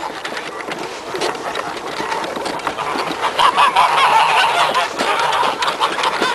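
A flock of white domestic geese honking, many calls overlapping, growing busier and louder about halfway through.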